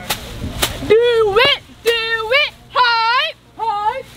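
Cheerleaders chanting a cheer in short, rhythmic, high-pitched shouted phrases. Two sharp percussive hits come in the first second, before the chanting starts.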